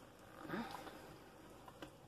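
Faint squishing and scraping of a utensil stirring thick pumpkin batter with chocolate chips in a metal mixing bowl. A brief rising pitched sound about half a second in and a light click near the end.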